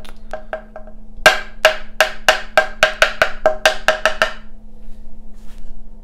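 A watercolour brush tapped repeatedly to flick watery white paint in a splatter: a few light taps, then about a dozen sharper, ringing taps at roughly four a second that stop a little past the middle.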